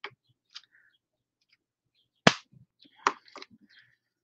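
Sharp snap about two seconds in as the sealed end of a two-part resin pack is snapped off by hand, followed by a few small plastic clicks of handling.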